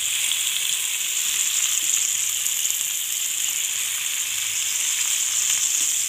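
Skewered raw chicken boti kabab pieces sizzling steadily in hot oil in a frying pan, an even high hiss in the first minutes of shallow-frying.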